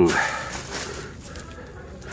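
Faint rustling and a few soft crackles of dry leaf litter, as the pile of dry durian leaves is disturbed.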